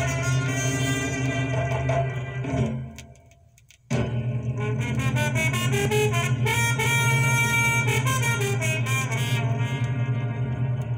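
Latin dance record with brass horns playing on a vinyl turntable. About three seconds in, the band drops out for about a second, then comes back in all together.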